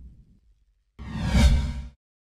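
Outro logo sound effects: the tail of a deep boom dies away in the first half second, then about a second in a sudden whoosh with a deep rumble swells up and cuts off sharply just before the end.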